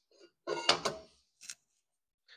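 Carbide-tipped steel circular saw blade being fitted onto a sharpening machine's saw holder: a quick run of metal clunks and scraping, with a short ring, about half a second to a second in, then one more knock.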